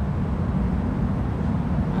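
A steady low rumble of outdoor background noise, with no other distinct sound standing out.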